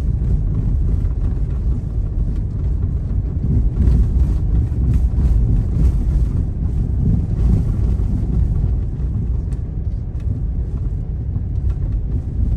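Steady low rumble of a car driving on a snow-covered road, heard from inside the cabin: engine and tyre noise.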